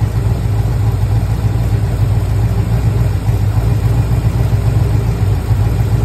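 Engine on a Holley 4160 four-barrel carburetor idling warm with the choke open, a steady low running sound. Idle vacuum is buzzing between 13 and 14 inches.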